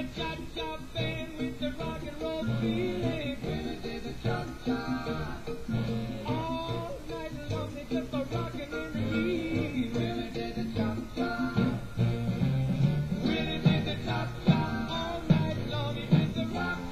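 A 1950s rhythm and blues record with a Latin cha-cha beat playing, its rhythm steady.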